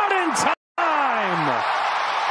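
A man's voice over steady stadium crowd noise, with the pitch sliding down in drawn-out sounds rather than clear words. About half a second in, all sound cuts out briefly.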